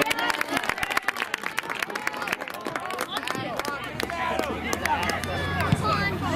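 Voices of players and spectators calling out at a soccer match, with a rapid run of quick knocks in the first half. A steady low hum comes in about halfway.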